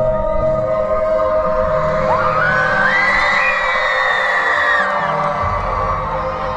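Show-intro music playing over a festival PA, a sustained droning chord, with a crowd cheering. About two seconds in, a long high cry rises and holds for about three seconds before it falls away.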